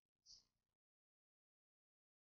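Near silence, broken only by one faint, short sound about a third of a second in, then total silence.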